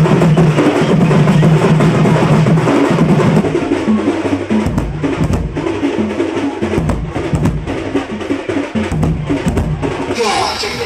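Festival percussion band of drums and metal gongs playing a fast, dense rhythm, with a large rope-laced drum beaten with sticks; heavy low drum strokes come in from about halfway through.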